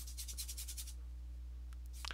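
A paintbrush scrubbing quickly through oil paint in rapid short strokes, about ten a second, that stop about a second in. A steady low electrical hum runs underneath.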